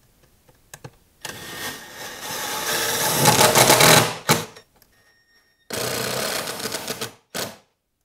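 Cordless drill boring out mounting holes with a 9/32-inch bit, run in two bursts: a longer one about one to four seconds in that grows louder as the bit bites, and a shorter steady one near the end, each followed by a brief blip of the trigger.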